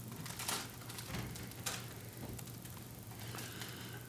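A few faint clicks and taps of a laptop keyboard being pressed, over a steady low room hum.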